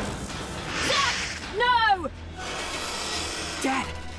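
Animated-series soundtrack of background music and sound effects, with a rushing swish about a second in and a short falling vocal cry about halfway through.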